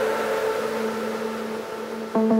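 Electronic dance music at a breakdown: a wash of synthesized noise over a faint held low note, slowly fading.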